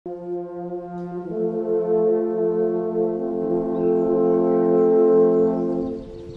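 Four wooden alphorns playing long held notes together in harmony, the chord changing about a second in and again about three seconds in, the notes ending at the close.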